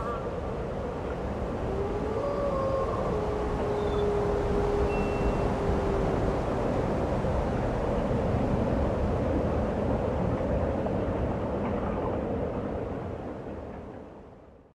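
Steady rumbling background noise with no music, and a few faint short tones in the first half. It fades out near the end.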